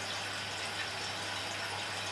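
A steady, even hiss with a faint low hum beneath it, unchanging throughout, with no distinct knocks or clicks.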